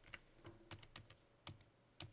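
Faint computer keyboard keystrokes, about six separate taps in two seconds, from keyboard shortcuts being pressed.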